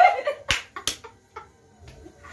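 Two sharp hand clicks about half a second apart as laughter trails off, then a couple of faint taps.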